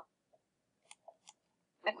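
A few faint, short clicks spread over about half a second, then a voice starts talking near the end.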